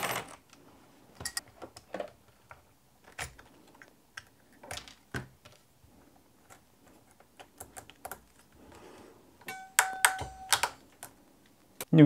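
Scattered light clicks and taps of small parts being handled as wire ends are fitted with crimp ferrules, with a short metallic ring among a cluster of clicks about ten seconds in.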